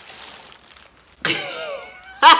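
Faint rustling of paper burger wrappers, then, just over halfway through, a woman's drawn-out wordless vocal sound that starts suddenly and falls in pitch.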